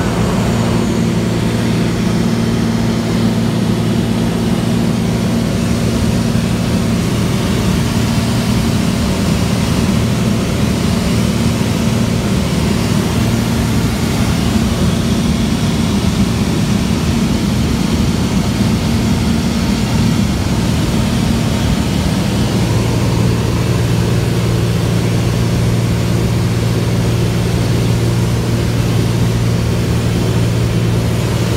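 Engine and propeller of a single-engine high-wing light aircraft droning steadily in cruise, heard inside the cabin. Its low hum blurs for a while in the middle, then settles again.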